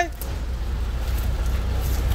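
A small truck's engine running with a steady low rumble as the truck moves off.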